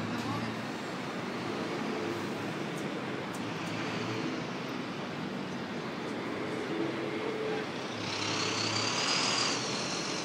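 Street traffic noise, a steady rushing hum with faint voices in the background. About eight seconds in, a louder hiss swells for a second or so and then fades.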